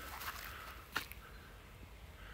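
Faint outdoor background noise with a low rumble, and one short click about a second in.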